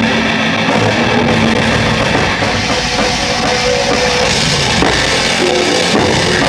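Death metal band playing live, loud and without a break: a drum kit played hard, heard close from beside the kit, with guitars.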